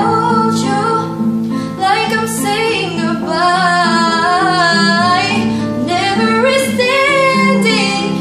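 A girl singing a pop song in English, accompanied by a nylon-string classical guitar; she holds one long, wavering note in the middle.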